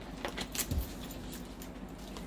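Light clicks and jingles from a hand wearing bracelets as it handles things on a table, with one soft thump a little before the middle.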